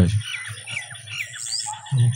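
Small birds chirping: a run of short, falling chirps, about three a second.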